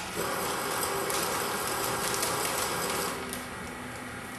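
Weighing-type powder filler's feeder running as it dispenses a dose of sugar: a steady mechanical whirr with sugar pouring through the chute, stopping about three seconds in and leaving a faint hum.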